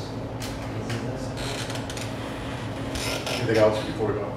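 Meeting-room background: a steady low hum with scattered small taps and rustles of handling at the table, and a short burst of a voice about three and a half seconds in.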